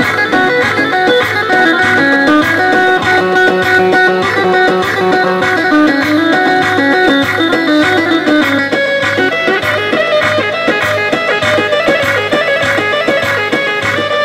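Electronic keyboard music played live through loudspeakers: a melody over a steady, evenly repeating beat.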